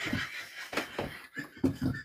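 Quiet laughter and breathing, with a few knocks and rustles of someone moving about.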